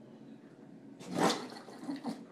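English bulldog sneezing: one sharp, noisy sneeze about a second in, then a smaller snort near the end.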